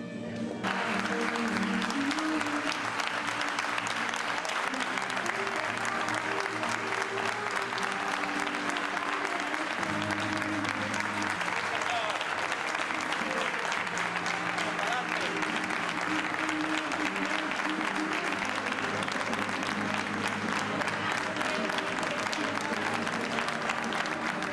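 A crowd applauding, the clapping starting suddenly about half a second in and continuing steadily, over music.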